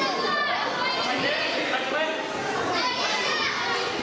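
Many children's voices shouting and calling out at once in a large hall, with louder bursts near the start and about three seconds in.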